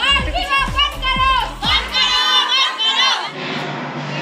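A group of girls shouting slogans together in a rally, over a steady drumbeat that stops about two seconds in; shortly before the end the sound cuts to a quieter room with a voice.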